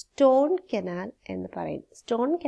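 A woman speaking: only speech, a lecturer's voice talking steadily with short pauses.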